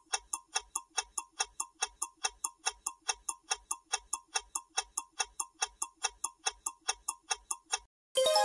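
Countdown timer sound effect: clock-like ticks, evenly spaced at about four a second, stopping just before the end.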